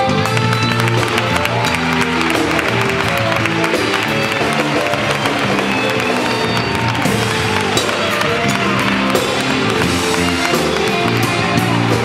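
Live band playing an instrumental passage with drum kit and guitar, loud and steady.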